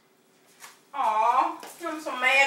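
Near silence, then a person's voice from about a second in.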